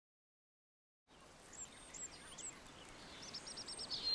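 Silence for about a second, then faint forest ambience fades in with birds chirping: a few short, curving calls, then a quick trill of about six notes near the end.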